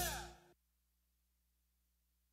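The band's final ringing chord fades out and stops about half a second in, followed by silence.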